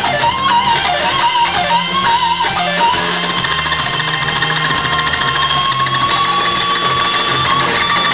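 Live blues-rock band with an electric guitar solo on a Fender Stratocaster over bass and drums. Quick bent phrases for the first few seconds, then one long sustained note from about three seconds in that slowly bends upward in pitch.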